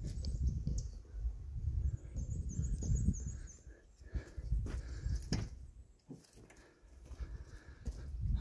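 Dogs barking in the distance, faint under a low rumbling noise on the microphone, with a short run of high bird chirps about two seconds in.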